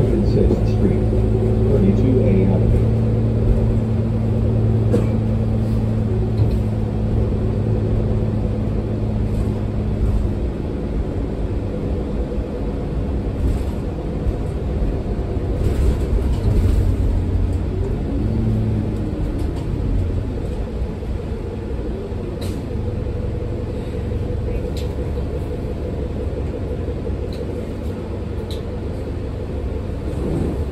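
Cummins L9 diesel of a 2022 New Flyer XD40 bus, heard from inside the cabin, with an Allison automatic transmission. The engine drone is steady, rises and falls in pitch in places, and has a low road rumble under it.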